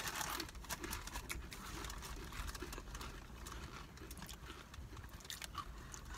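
Crunching and chewing of Doritos Dinamita rolled tortilla chips: irregular crisp crunches from bites, coming thicker at first and thinning out toward the end.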